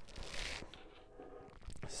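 Faint handling sounds on a desk, with a soft rustle early and a short soft click near the end.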